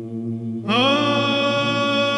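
Byzantine chant: a steady low ison drone is held throughout. About two-thirds of a second in, a solo chanter's voice enters over it, sliding up into a long held note.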